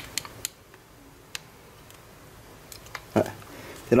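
A few light, sharp clicks of hard plastic in the first second and a half as a battery adapter and a Ryobi cordless tool are handled and fitted together.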